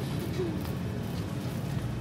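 Steady background noise of a busy supermarket aisle, a low even hum with no clear single event.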